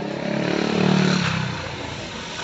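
A motor vehicle engine passing close by, swelling to its loudest about a second in and then fading away.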